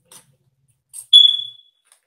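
A single high-pitched electronic chirp that fades out within about half a second.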